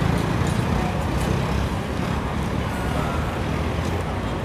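Steady road traffic noise, a continuous low rumble of motor vehicles.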